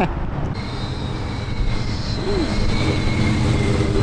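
A performance car's engine idling with a steady, deep rumble, with a faint high whine on top from about half a second in. Heard up close, it sounds crazy.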